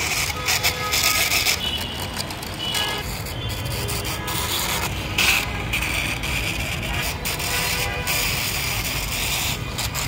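Toy car's wheels rolling and scraping along a brick wall as it is pushed by hand, a rasping noise that comes and goes in uneven stretches.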